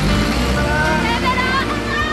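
A truck's engine running with a steady low hum, while voices call out long, drawn-out goodbyes over it.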